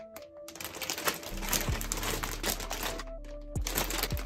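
Thick plastic packaging bag crinkling and crackling as hands handle it and pull at it to get it open, under background music.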